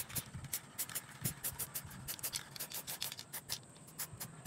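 Aerosol spray-paint can sprayed in quick short bursts onto a metal bicycle frame: a rapid, uneven series of short hissing puffs, several a second.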